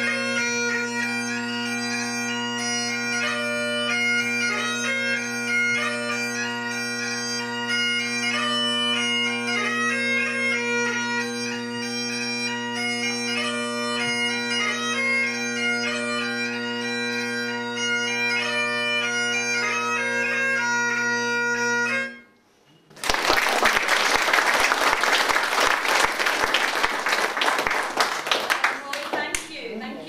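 Highland bagpipe music, steady drones under the chanter melody, that stops abruptly about two thirds of the way in; after a brief pause an audience breaks into applause.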